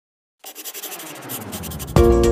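Pencil-scribbling sound effect: pencil lead scratching rapidly on paper, starting about half a second in and growing steadily louder.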